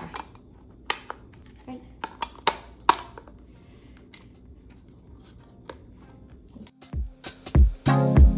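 Scattered sharp plastic-and-metal clicks of the Ninja Creami's blade being seated in its outer bowl lid. Near the end, music with a steady beat starts and becomes the loudest sound.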